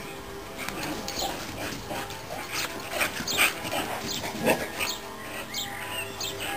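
Dogs vocalizing during rough play: a run of short sounds in the middle, loudest about three and a half and four and a half seconds in.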